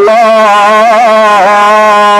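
A man's voice holding one long sung note in a chanting style of preaching, wavering in pitch through the middle and then held steady. A steady low hum runs underneath.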